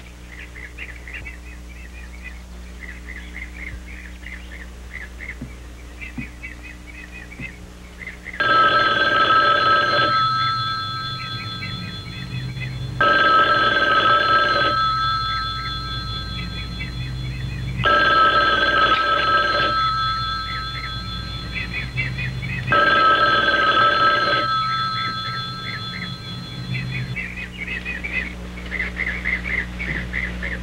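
Landline telephone ringing four times, each ring about two seconds long and about five seconds apart, starting about eight seconds in.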